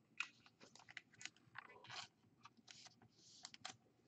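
Faint, irregular small clicks and rustles of a trading card being handled and set aside, with a brief soft swish near the end.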